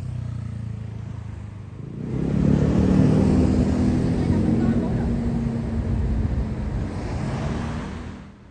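City street traffic: a motor vehicle's engine running close by, growing much louder about two seconds in and staying loud.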